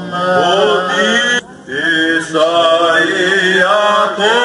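Byzantine chant of the Greek Orthodox wedding service: sung voices on long, ornamented notes that slide and waver in pitch, with a brief break about a second and a half in. It is the chant that goes with the common cup and the couple's procession around the table.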